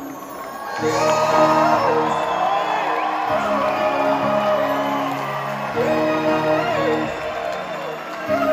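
Live bhangra band music in a large hall, picking up with sustained held notes after a brief lull about a second in, with whoops from the audience or stage.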